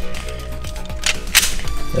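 Hard plastic parts of a Transformers Megatron Knight Armor Turbo Changer toy clicking into place as it is transformed: a few sharp clicks just after a second in, over steady background music.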